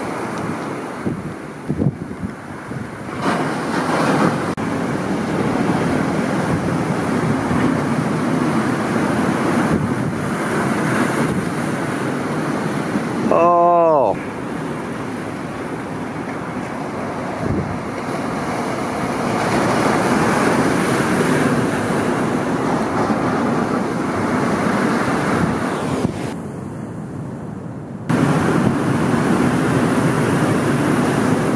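Ocean surf breaking and washing, with wind buffeting the microphone; the sound shifts abruptly a few times where the footage is cut. A brief pitched call rings out about halfway through.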